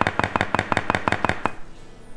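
Plastic spatula chopping down through a cake, its edge knocking against the bottom of a glass baking dish in a rapid run of about a dozen knocks, some eight a second, that stops about one and a half seconds in.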